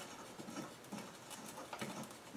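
Faint handling noise from the rocker box and rocker shaft assembly being worked by hand on a metal bench: a few small clicks and light scrapes, with a couple of ticks near the end.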